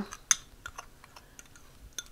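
Metal fork clicking and tapping against a small ceramic bowl while stirring a dry spice rub: one sharper click about a third of a second in, then a few light ticks.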